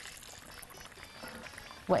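A pot of water boiling steadily as tomato slices are slid off a wooden board into it.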